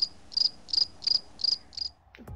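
Cricket chirping sound effect, a regular series of short high chirps about three a second that stops near the end: the comic "crickets" cue for an awkward silence.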